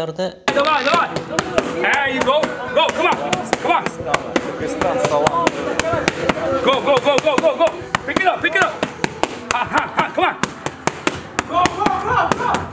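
Boxing gloves striking a trainer's focus mitts in a rapid, irregular string of smacks, with a man's voice over them.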